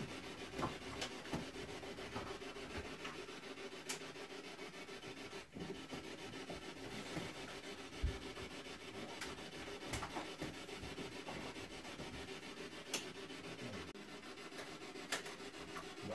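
Quiet room tone: a steady low hiss with a faint hum, broken by a few light clicks here and there.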